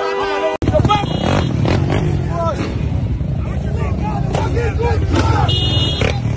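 Motorcycle engines running close by under loud crowd shouting and yelling. Before this, an abrupt cut about half a second in ends a stretch of held tones and voices.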